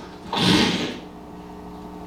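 A man's voice making a short whooshing 'shh' sound effect for two service windows sliding up, starting about a third of a second in and lasting well under a second, followed by faint room hum.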